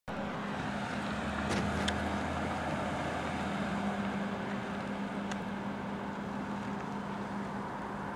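Car driving, with a steady engine hum and road noise heard from inside the cabin. A low rumble drops away about three and a half seconds in, and there are a few faint clicks.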